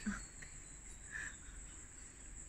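Faint, steady high-pitched insect trill in the forest, with a brief soft chirp a little over a second in.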